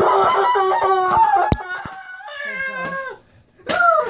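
A child's long, high-pitched screaming: several drawn-out cries in a row, then a short one near the end.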